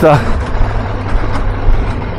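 Triumph Tiger 1200 Rally Pro's three-cylinder engine running steadily at low speed, a low even hum under the noise of riding on a gravel track.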